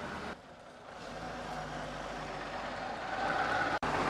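Heavy truck traffic: truck engines running steadily with road noise. The sound dips briefly just under a second in.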